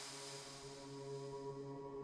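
Faint outro of a drum and bass track: the reverb tail of a final hit fades away, leaving a quiet, steady synth drone holding several notes.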